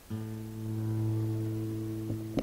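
Acoustic guitar sounding a single low note, plucked about a tenth of a second in and left to ring on steadily.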